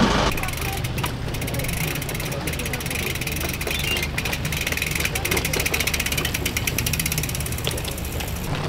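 Bicycle being ridden: a rapid fine ticking over a low wind rumble on the microphone.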